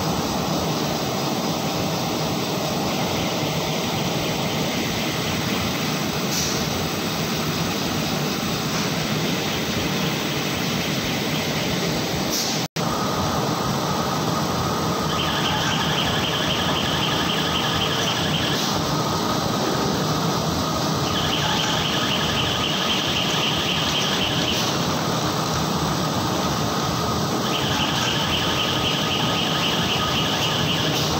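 Roll-fed paper printing press running steadily as the printed web feeds over its rollers. A constant machine noise, joined in the second half by a high whine that comes and goes in spells of about three seconds. The sound breaks off for an instant near the middle.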